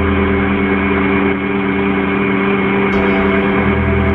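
Bobcat skid-steer loader's diesel engine running at a steady speed, a constant even hum.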